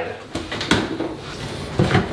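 Cardboard packaging being handled, with a soft rustle and scraping between three light knocks, the last near the end.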